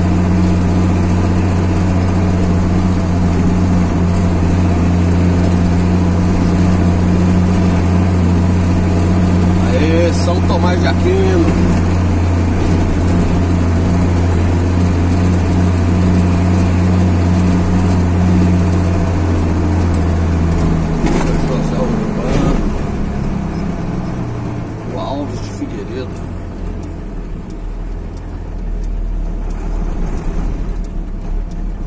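Vehicle engine heard from inside the cab, running with a steady, loud hum while climbing a steep street. About two-thirds of the way through, its pitch steps down and the sound eases off as the vehicle slows.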